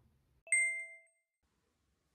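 A single bright chime sound effect: one ding with a few clear ringing tones that die away within about half a second.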